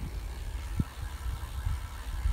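Low, unsteady rumble of wind and road noise on the microphone of a phone filming from a moving bicycle.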